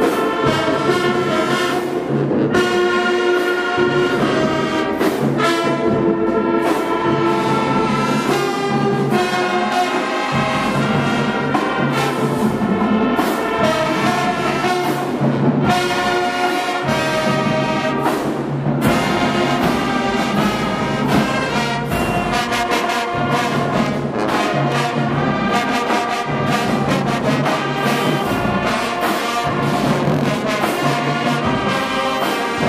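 High school marching band playing a loud, steady tune: trumpets, trombones, saxophones and sousaphones over an even percussion beat.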